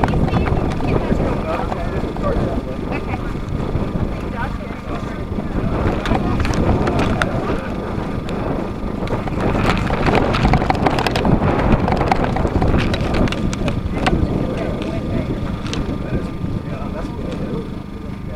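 Wind buffeting the microphone in a steady low rumble, with indistinct voices of people talking nearby.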